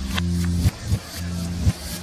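A soul-rock song played in reverse, in an instrumental stretch with no singing: held low bass and keyboard notes, and drum hits that swell up and cut off abruptly, about two a second, as reversed percussion does.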